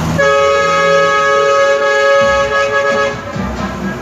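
A loud vehicle horn sounds one steady chord of several tones held together for about three seconds, then cuts off.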